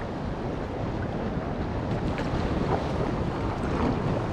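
Ocean water sloshing and lapping right at a waterline camera, with wind on the microphone, and a few small splashes in the second half.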